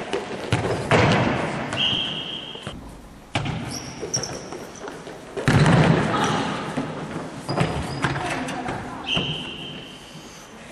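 A futsal ball being kicked and bouncing on a wooden sports-hall floor, with thuds that echo around the hall, the loudest about halfway through. A high steady tone about a second long sounds twice, once near the start and once near the end.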